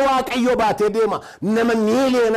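Speech only: a man preaching with emphasis.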